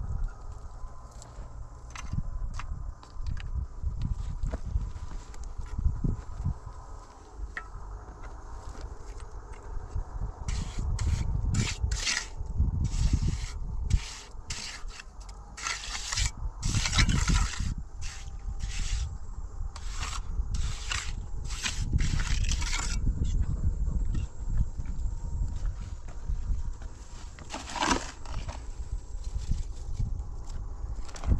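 Steel hand trowel scraping and pressing wet concrete into the hollow cores and across the tops of concrete blocks. A dense run of short, sharp scrapes comes through the middle, over a steady low rumble.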